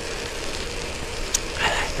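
Steady rush of wind over the microphone and hiss of studded bicycle tyres on a wet road while riding at about 19 mph, with one brief faint tick a little over a second in.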